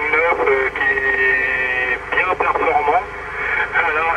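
A voice coming through an AM CB radio, thin and narrow-band, too garbled for words to be made out. It includes one steadily held sound between about one and two seconds in.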